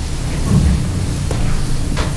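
Steady low rumble with an even hiss of room noise, with a couple of faint knocks.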